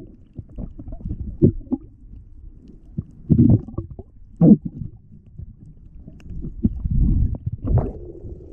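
Muffled underwater sound of a diver moving and handling a shell and a rock: low rumbling water movement with scattered knocks, and several louder bursts, the last one near the end.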